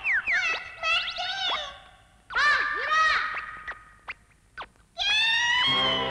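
Electronic cartoon sound effects: swooping tones that first glide down and then rise and fall in arcs. A few short clicks follow about four seconds in, and a rising tone enters near the end.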